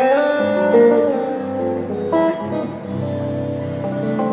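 Guitar played fingerstyle: a melody of picked, ringing notes over low bass notes, an instrumental fill between sung lines.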